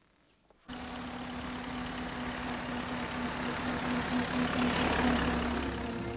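Engine of a vintage 1920s-style motor car running as it drives along a drive, cutting in suddenly after a moment of near silence: a steady hum that grows slightly louder as it goes.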